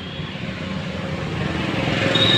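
Tractor diesel engine idling, a steady low rapid pulsing that grows louder toward the end.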